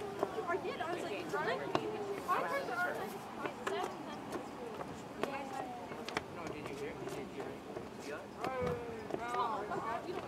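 Indistinct voices of several people talking and calling out at once, with a few sharp clicks or knocks among them.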